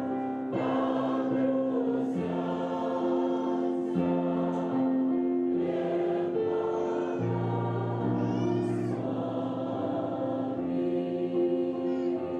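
A church choir singing a slow hymn in long held chords, with keyboard accompaniment; a high voice wavers above the chord about two-thirds of the way through.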